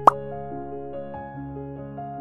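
Background music of sustained keyboard-like notes over a held low note, with a short sharp pop sound effect right at the start.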